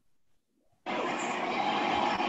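Near silence, then a steady hiss of background noise cuts in suddenly about a second in, as an open microphone line in the online meeting comes on.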